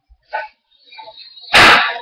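Two short sharp sounds, then about a second and a half in one much louder, harsh burst lasting under half a second.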